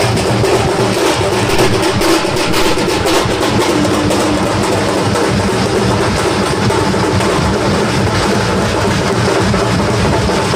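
A procession drum band beating hand-held drums in a rapid, continuous rhythm, loud and steady, with pitched music mixed in.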